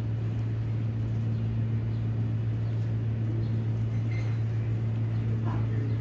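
A steady low hum, unchanging throughout, with two faint short high-pitched calls about four and five and a half seconds in.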